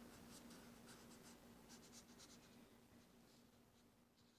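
Faint scratching of a chisel-tip washable marker drawn across sketchbook paper in a series of short strokes.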